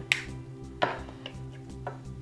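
Three sharp metallic clicks from a Victorinox pocket knife being handled, the first the loudest. They sit over soft background music with held notes.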